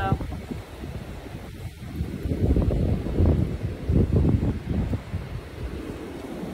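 Wind gusting across a phone microphone outdoors: a low, rushing noise that swells and eases several times.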